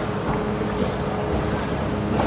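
Steady rushing background noise with a low, even hum underneath and no distinct knocks or hits.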